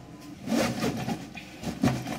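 Fabric rustling and bumping as a soft fleece blanket is pushed into a nylon JanSport backpack, in uneven bursts with a louder bump just before the end.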